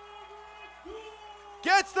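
A quiet lull with a faint, held voice-like tone, then a man's sports commentary starting near the end.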